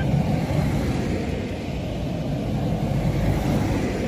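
Cars driving past on a road: a steady rumble of engines and tyres.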